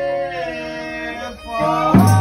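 Folia de Reis folk music: voices holding a long note in harmony over fiddle and guitars. The held chord slides down and fades about one and a half seconds in, and a new chord starts with a strum near the end.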